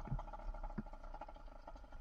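Faint, steady running of a bicycle-mounted 110cc two-stroke engine, a held hum with rapid pulsing as the bike rolls along.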